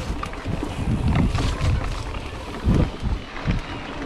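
Mountain bike riding a bumpy dirt track: wind buffeting the microphone in uneven low gusts, with scattered clicks and rattles from the bike over the rough ground.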